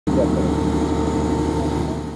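A steady mechanical drone with a held hum, like an engine running at a distance.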